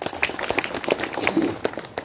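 A small audience applauding: many overlapping hand claps.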